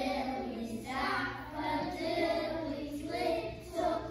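A group of young children singing together in unison, with held, pitched notes.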